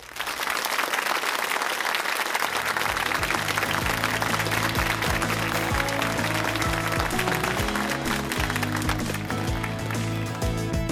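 Studio audience applause, with the show's theme music coming in under it about three seconds in and carrying on to the end.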